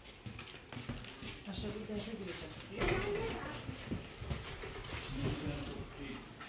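Indistinct voices of people talking in a small room, with a few light knocks.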